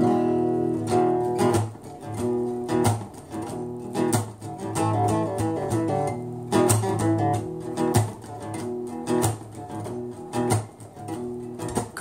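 Acoustic guitar strummed in a steady rhythm, chords ringing between the strokes, as the instrumental opening of a song.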